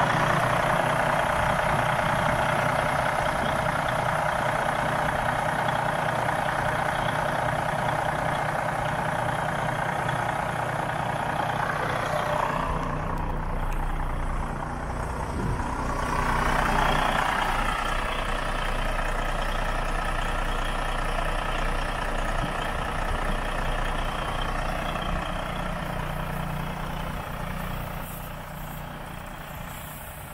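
Diesel engine of a Freightliner Cascadia semi tractor idling steadily with the hood open, a low drone under a hiss. It grows fainter over the last few seconds.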